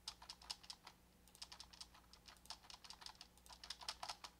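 Faint typing on a computer keyboard: quick runs of keystrokes, with a short break about a second in, as lines of Python code are indented.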